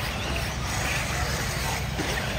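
Electric off-road RC buggies running on a dirt track, heard as a steady, noisy background over a heavy low rumble, with no distinct motor whine standing out.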